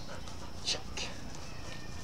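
One short spoken word, "check", over a steady low background rumble of outdoor air.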